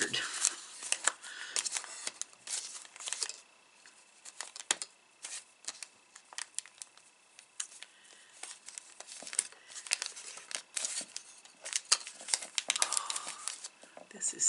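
Crinkling and rustling of a small package's wrapping being handled and pulled open, with short tearing sounds, in irregular bursts with a few brief pauses.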